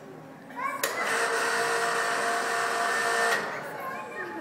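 A loud, steady whirring noise with a hiss cuts in suddenly about a second in and stops after about two and a half seconds.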